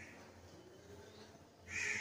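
Quiet room tone for most of the time, then a short faint sound near the end.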